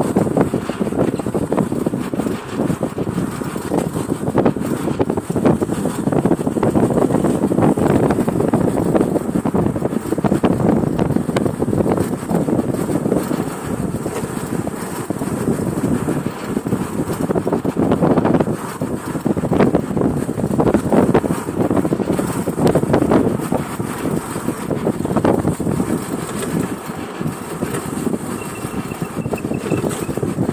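Motorcycle engine running while riding along at speed, mixed with wind rushing and buffeting over the microphone, the level rising and falling throughout.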